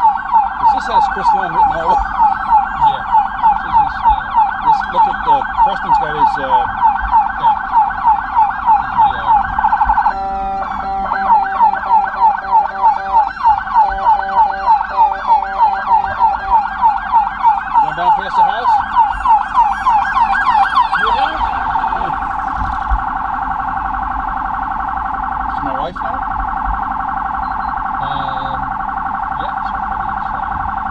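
Electronic police siren on a fast yelp, about two to three rising sweeps a second, broken briefly by a stuttering, pulsed tone about ten seconds in before the yelp resumes. From about 22 seconds it gives way to a steadier mix of overlapping siren tones, with other sirens sounding fainter behind.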